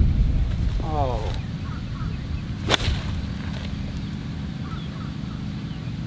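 A 56-degree golf wedge striking the ball once about three seconds in: a single sharp, crisp click. Wind rumbles on the microphone at the start and fades.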